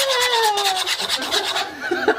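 A wire whisk beating crêpe batter in a metal pot, scraping against the pot in fast, even strokes. A long falling tone sounds over it through the first second or so.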